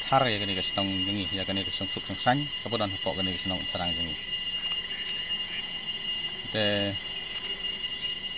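A man's voice speaking for about four seconds, pausing, then saying a few more words near the end. Throughout, several thin steady high-pitched tones sound together as a constant whine underneath.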